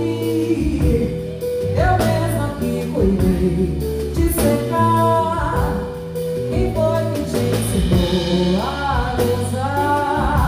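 A woman singing a song live, accompanied by electric guitar and a drum kit. Her voice slides between notes over the band's steady groove, with drum and cymbal strokes keeping time.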